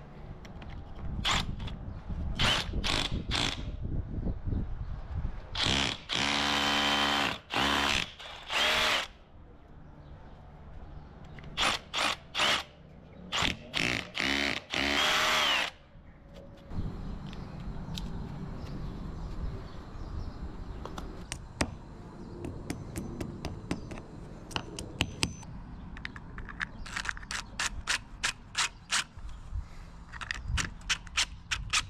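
Power drill running in repeated bursts against a pebbledash masonry wall, its motor whine rising and falling in pitch as it speeds up and slows. A run of sharp clicks follows near the end.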